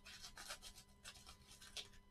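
Faint, rapid scratchy strokes of scissors cutting through a layered paper mail envelope.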